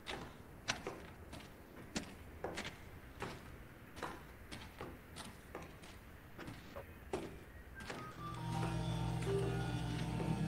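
Footsteps at a steady walking pace, about one every 0.6 s. About eight seconds in, piano notes come in along with a low, steady rumble of interference.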